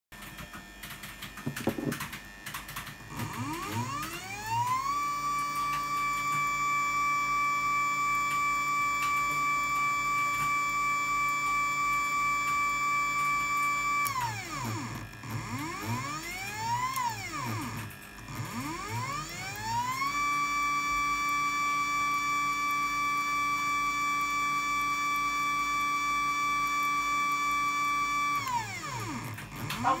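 Aerotech ART315 rotary actuator's two-phase motor whining with a pitched tone that tracks its speed. The tone rises as it speeds up, holds steady for about nine seconds, falls as it slows, gives a short rise and fall, then ramps up again. It holds for about eight seconds more and winds down near the end.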